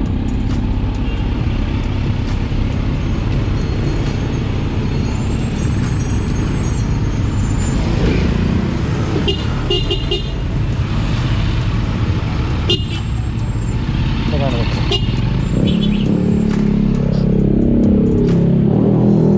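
Kawasaki Z900's inline-four engine running steadily under the rider as the motorcycle sets off into traffic, with a few short horn toots around the middle.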